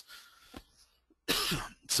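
A man coughing once, a short rough burst of about half a second, a little past the middle, just before he speaks again.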